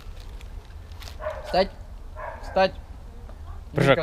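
A dog whining in short, high, falling cries, three of them a little over a second apart.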